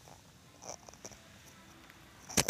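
Quiet store background with a faint rustle about two-thirds of a second in and a small click about a second in.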